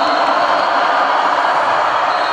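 A crowd of many voices fills an echoing sports hall, forming a dense, steady wash of shouting with a thin steady high tone above it. It starts and stops abruptly.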